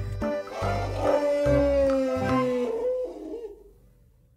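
An elephant trumpeting: one long call that falls slightly in pitch and fades out.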